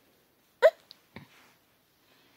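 A baby boy hiccups: one short, loud hiccup a little over half a second in, then a second, fainter one about half a second later.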